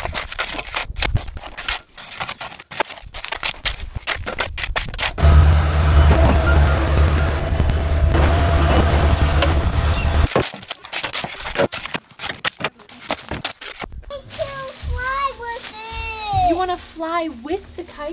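A shovel scraping and digging into a pile of gravel and rock, with irregular sharp scrapes and knocks. From about five seconds in, a skid steer's engine runs with a steady low drone for about five seconds. Near the end come sliding, pitched, voice-like sounds.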